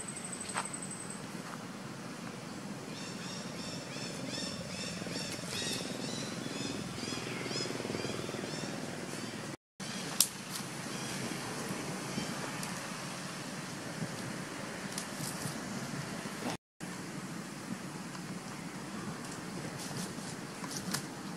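Outdoor woodland ambience: a steady hiss with a run of high, rapidly repeated chirps from about three to eight seconds in. The sound cuts out abruptly twice for a moment.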